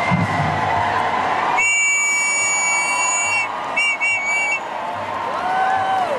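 A whistle blown in one long steady blast of about two seconds, then three quick short toots, over the noise of a large crowd with shouting.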